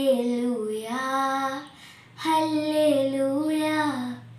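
A girl singing a Malayalam Christmas carol in two long, held phrases, with a short breath between them about two seconds in.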